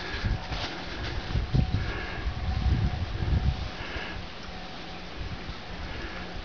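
Handling noise: low rumble and soft thumps, with light rustling, as a hatchet head is held up and shifted in a paper towel close to the camera.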